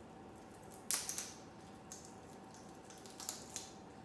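Moluccan cockatoo chewing on a pine cone: a few short crunches and snaps from its beak, about a second in and again a little past three seconds.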